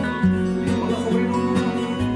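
Background music: a song led by acoustic guitar, with held notes changing every half second or so.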